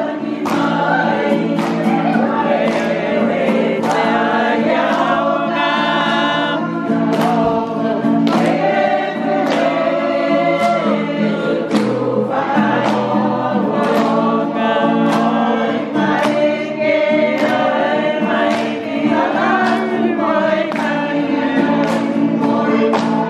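A group of voices singing together in harmony over steady low accompanying tones, with a regular beat of sharp strokes.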